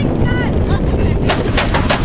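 Wind buffeting the microphone on a moving fairground ride, a steady heavy rumble with a series of sharp pops in the last part. A brief high-pitched voice calls out about a third of a second in.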